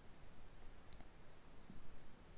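Computer mouse clicking twice in quick succession about a second in, over faint room noise.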